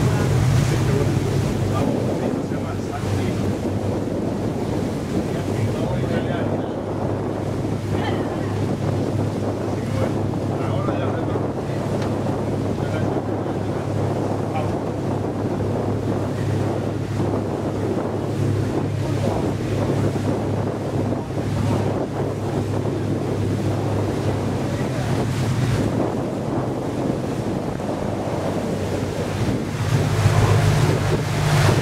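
Passenger boat under way: its engine running with a steady low drone, water rushing past the hull, and wind buffeting the microphone.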